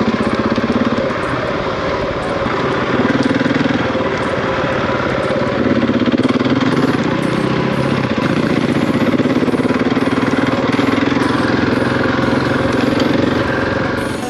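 Husqvarna 701 motorcycle engine running while riding a dirt trail, revs rising and easing several times with the throttle, over a steady hiss of wind and tyres.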